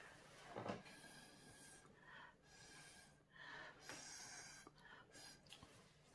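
Several faint, short puffs of breath, blowing across wet alcohol ink to push it over the tile.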